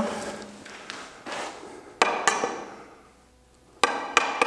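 A wooden batten knocking down on a steel screed rail bedded in loose dry levelling fill, to drive the rail lower to the laser height. There are a few sharp knocks: a light one just past a second in, then strong ones about two seconds in and near the end.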